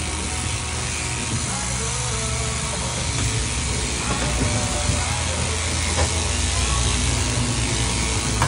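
Overhead-drive sheep-shearing handpiece running steadily, its cutter clipping wool from a ram's underside.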